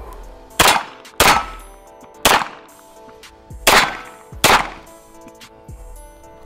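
Five single pistol shots from an Archon Type B 9mm handgun, fired at an uneven pace, each with a short ringing tail, over background music.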